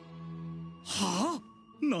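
A steady low note of background music, then about a second in a short, breathy voiced gasp of surprise from an anime character. Speech begins near the end.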